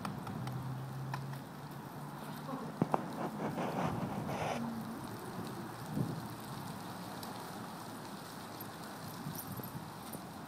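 Footfalls and small clicking steps on a hard floor, with a sharp click about three seconds in and a couple of brief low hums.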